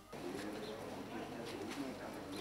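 Faint outdoor street ambience with soft bird cooing.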